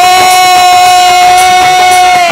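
A woman's voice holding one long, steady high note in a Rajasthani devotional bhajan sung live, with a quieter lower accompanying tone beneath it.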